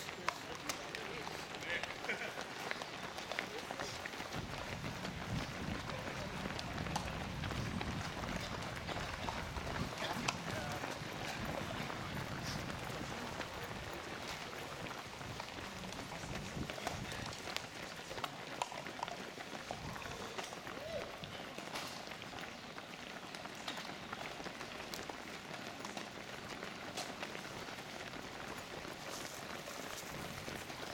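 Footsteps of a large crowd of marathon runners on cobblestones, a steady dense patter of many feet, with indistinct voices mixed in.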